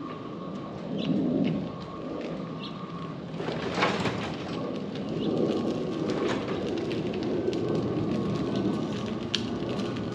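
Small kayak trailer being pushed by hand over the street and concrete driveway: its wheels rumble on the pavement, with scattered clicks and knocks.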